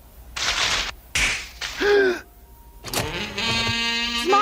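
Cartoon sound effects of a pile of crumpled paper rustling in two short bursts as a body sinks into it, then a short falling pitched cry about two seconds in. A sharp hit about three seconds in is followed by a held musical chord.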